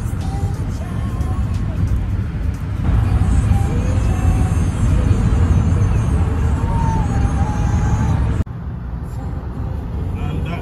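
Music with a singing voice over the steady low rumble of road noise inside a moving car at highway speed. About eight and a half seconds in, the sound cuts abruptly to quieter road noise.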